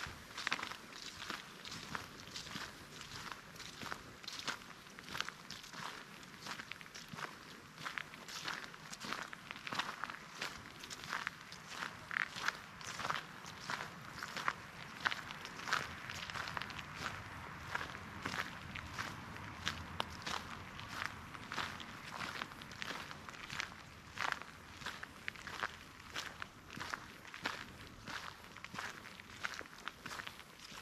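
Footsteps of a person walking at a steady pace on a dirt path strewn with dry fallen leaves, each step crunching and rustling the leaves underfoot, about two steps a second.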